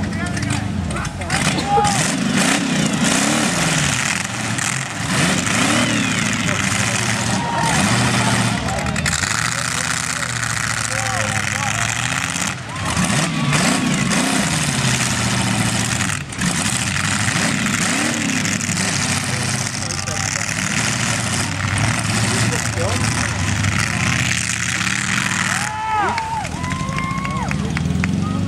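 Several demolition derby cars' engines revving hard together, pitch rising and falling over a constant din as they drive and spin on the dirt.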